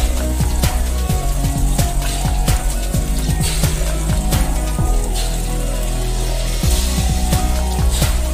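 Background electronic music with a steady beat and deep bass hits that fall in pitch.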